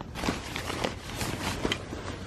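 Rustling of a backpack's nylon fabric being handled as a gimbal case is pushed into it, with a few small knocks.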